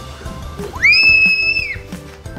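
A child's high-pitched squeal held for about a second, rising at the start and dropping off at the end, while sliding down a plastic slide, over background music.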